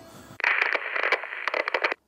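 A burst of crackling, radio-like static lasting about a second and a half. It starts abruptly and cuts off suddenly, like a static transition effect laid over an edit.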